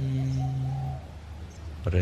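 A man's voice drawing out the last syllable of a word on one low, steady pitch for about a second, in slow meditation-guiding speech, then a short pause before he speaks again near the end.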